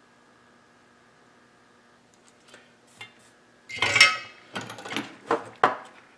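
Metallic clatter, loudest about two-thirds of the way through, with several sharp clicks around it. It is a soldering iron being set back into its metal stand and a freshly soldered connector pin being handled at a cast-iron bench vise. Before that there is near silence with a faint steady hum.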